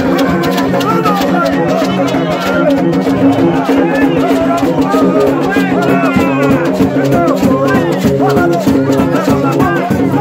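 Live Dominican gagá music in a dense crowd. Low notes repeat in a steady interlocking pattern, typical of gagá bamboo trumpets, under a shaken rattle, drums and voices singing and calling.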